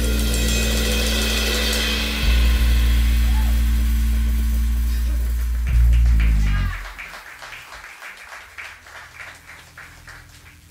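A live jazz combo of drum kit, bass guitar and piano holds the song's final chord under a cymbal wash, with heavier accents about two and six seconds in, then stops about seven seconds in. A few people clap sparsely after the band stops.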